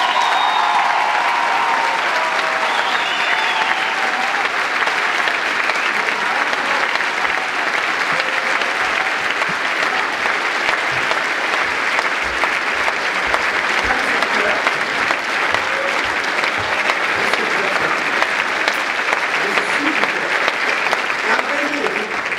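Sustained applause from a theatre audience and the cast on stage, breaking out abruptly and holding steady and loud.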